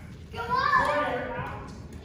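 Children's voices shouting and calling out during a game in a gymnasium, starting after a brief lull.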